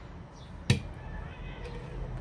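A single sharp knock about two-thirds of a second in, a plastic blender jug knocking against a hard surface as it finishes pouring strawberry purée, over low kitchen room noise.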